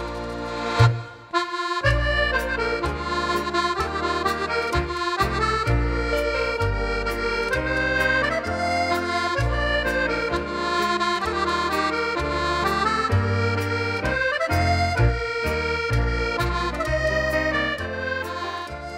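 Scottish country dance music led by accordion. It begins with a held chord, breaks off briefly about a second in, then runs as a lively tune over a steady beat and bass.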